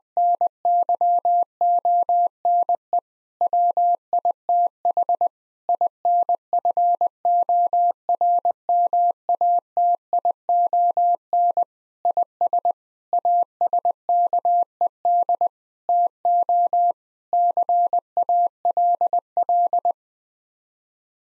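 Morse code at 20 words per minute: a single steady mid-pitched tone keyed on and off in dits and dahs, with short pauses between words, sending a seven-word phrase for head-copy practice.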